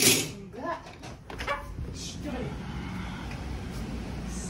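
A short, loud swish right at the start as the way out to a balcony is opened, followed by brief voices and then a steady low hum of the outdoor surroundings.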